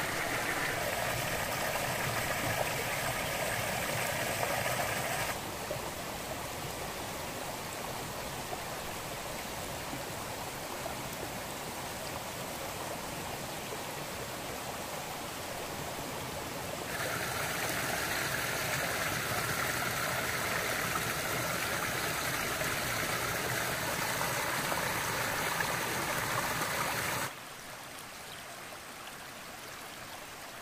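Stream running over rocks, a steady rush of water. It shifts abruptly in loudness three times: quieter about five seconds in, louder and brighter around seventeen seconds, then quieter again near the end.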